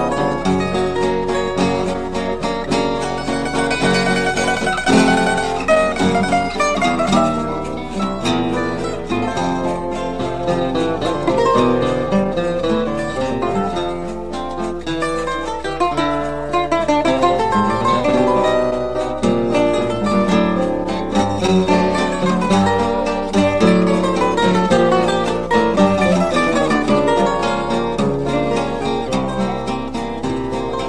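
Choro played on cavaquinho with guitar accompaniment: a fast run of plucked melody over strummed chords. A steady low hum runs underneath.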